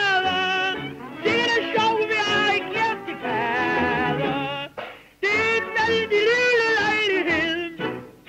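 A woman singing long held notes with a strong vibrato, backed by a small dance orchestra: the closing phrases of a 1930 revue song on an old shellac gramophone record. The singing breaks off briefly about five seconds in.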